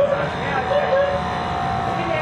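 Steady low machine hum, with a thin steady tone joining it about half a second in and holding through the rest.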